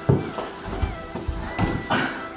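Background music with several irregular thuds from players' feet and a mini basketball hitting the floor during close play.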